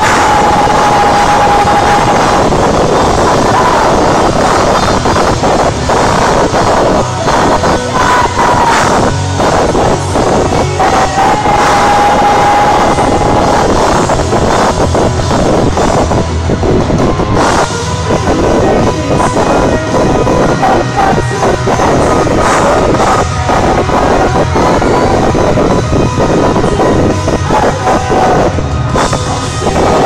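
A live rock band playing loudly in an arena, the phone recording pushed near its limit. Drum hits run throughout, and a held note sounds near the start and again about eleven seconds in.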